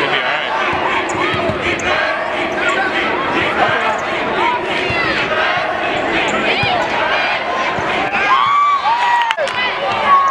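Girls' basketball game in a large arena: the ball bouncing on the hardwood court amid steady crowd noise and shouting voices.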